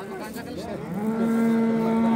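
A cow moos: one long call held at a steady pitch, starting about a second in.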